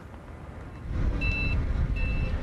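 Forklift's reversing alarm beeping twice, a high single-tone beep, starting a little over a second in, over the low rumble of the forklift's engine.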